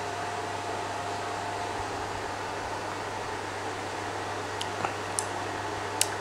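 Steady background hum and hiss in a small room, with two faint clicks near the end.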